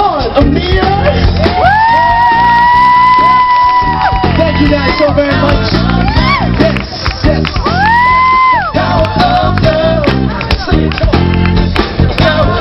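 Live pop band playing, drum kit and guitar, with singers holding long high notes: one from about a second and a half in to four seconds, and another shorter one near the eight-second mark.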